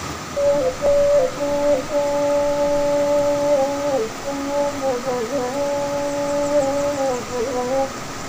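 Saluang, the Minangkabau bamboo end-blown flute, playing a slow melody of long held notes, each ending in a short dipping ornament.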